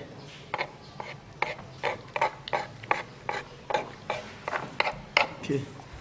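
Metal dissecting instruments clicking during a fish dissection: a steady run of small, sharp clicks, about two to three a second.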